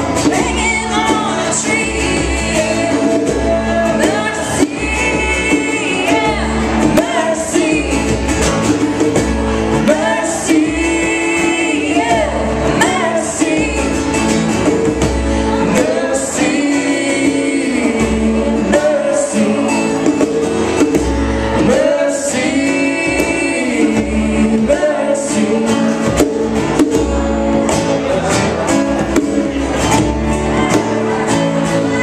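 A live acoustic band playing a song: strummed acoustic guitars under a woman singing lead into a microphone, with a steady low pulse beneath.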